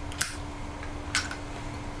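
A tobacco pipe being lit with a Zippo lighter: two short sharp clicks about a second apart, over a faint steady hum.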